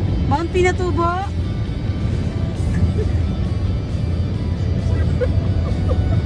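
Steady low rumble of a car driving at highway speed, heard from inside the cabin, with a voice or singing briefly in the first second.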